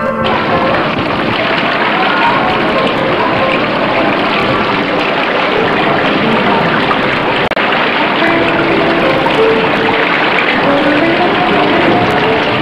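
Steady splashing of a garden fountain's falling water, a dense even rush that starts abruptly.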